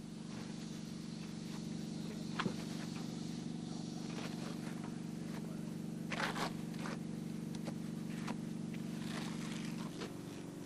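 A steady mechanical hum from machinery running on the building site. Over it come a few brief scrapes of a plasterer's float and straightedge drawn across wet base mortar sprayed onto insulation boards, levelling the layer. The clearest scrapes fall about two and a half seconds in and around six seconds in.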